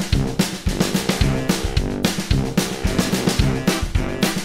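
Upbeat instrumental music of a children's song, with a steady drum-kit beat of bass drum and snare under bass and chords, between sung verses.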